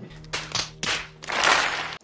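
Short breathy bursts of laughter from people in the room, the longest about one and a half seconds in, over a steady low hum.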